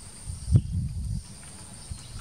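Low, uneven rumbling from a female Asian elephant, with a sharp snap about half a second in. A steady high insect drone runs underneath.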